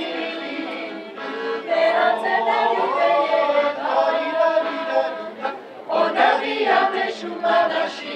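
Music: a choir singing, several voices holding notes together.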